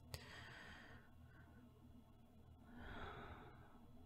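Faint, slow sleeping breaths of a woman close to the microphone: a small click just after the start, a soft breath out, then a second, longer breath about three seconds in.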